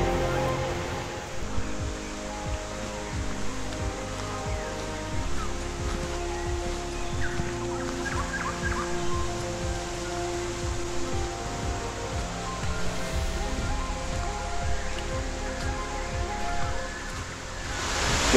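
Soft background music of long held notes, laid over a steady rush of water from a small waterfall and stream.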